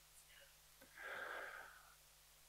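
Near silence, broken about a second in by one faint, breathy exhale lasting under a second.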